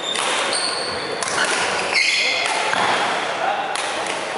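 Badminton being played on a wooden sports-hall floor: court shoes squeak in short, high chirps several times, over background chatter.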